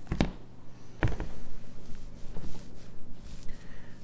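Clear plastic lid of a Rubbermaid storage tote being handled and lifted off. There are two sharp plastic knocks, one right at the start and one about a second in, followed by softer handling sounds.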